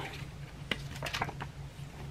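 Pages of a paper instruction booklet being flipped by hand: faint rustling with a sharp tick a little before a second in and a few smaller ticks just after.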